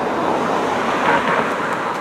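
Steady noise of road traffic: a car passing on the road alongside.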